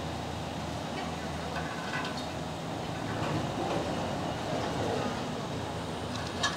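Steady low hum and rumble of the Disney Skyliner gondola lift running, its cabins passing along the cable, with faint indistinct voices in the background.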